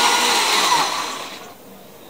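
Countertop blender with a clear jar running at full speed, blending a smoothie, then switched off about a second in, its motor winding down until it stops.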